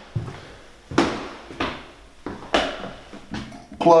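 Footsteps on a bare wooden floor, about one step a second, each with an echo from the empty rooms.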